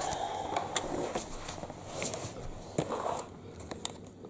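Handling noise from a plastic handheld vacuum cleaner being picked up and turned over, with rustling early on and several sharp plastic clicks near the end as its dust box catch is reached for.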